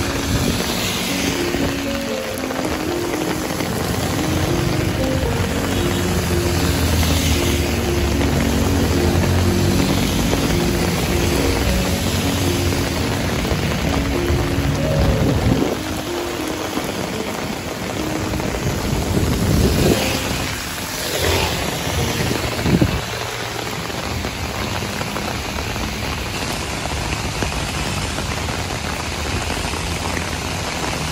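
Heavy rain hissing steadily on a wet asphalt street, with vehicles swishing past on the wet road a few times in the second half. Background music with held notes plays over the rain through the first half.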